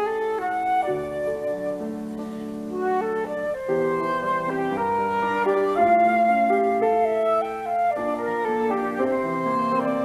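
Flute playing a light, lilting melody of quick changing notes over a lower accompanying part from a second instrument.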